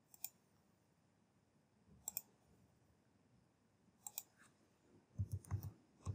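Faint computer mouse clicks: a single click, then two quick double clicks, then a rapid run of several clicks near the end.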